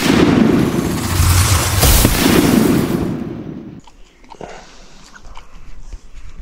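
Sudden loud explosion-like sound effect with a long noisy rumble that fades out about three and a half seconds in. It is followed by faint outdoor ambience with a few small clicks.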